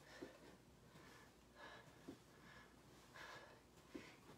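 Faint, quick heavy breathing of a person exerting hard mid-exercise, with a few soft thuds.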